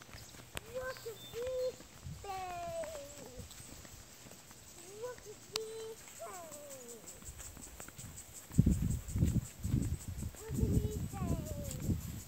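A toddler's wordless babbling: short high calls, several of them sliding down in pitch. Low thumps come in during the last few seconds.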